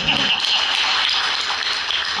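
An audience applauding: a dense, steady clatter of many hands that starts suddenly.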